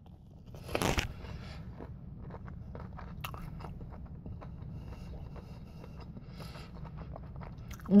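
A bite into a crispy fried chicken tender gives one loud crunch about a second in, followed by close-up chewing with many small crunches of the breading.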